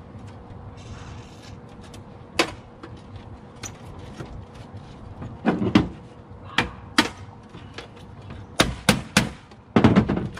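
Hammer blows struck on a tool set against a burned computer's steel case, freeing the power supply at its heat-melted latch. The sharp, irregular strikes come singly at first, then faster and harder in the second half.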